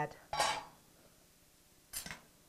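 A metal pot lid clattering against cookware: a short scraping clink with ringing about half a second in, then a sharp clink near the end as it is set down on the pan.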